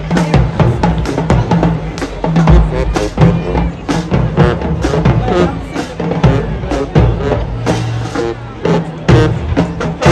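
Marching band drumline playing a fast, driving rhythm on snare and bass drums, with low notes sounding underneath.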